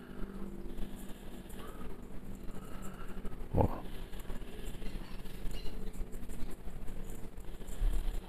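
Dry barbecue rub shaken from a jar onto chicken wing pieces in a stainless steel bowl: a faint, irregular patter of falling powder.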